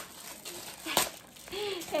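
A small cardboard box and its packaging being handled: one sharp click about halfway through, then a short rustle near the end.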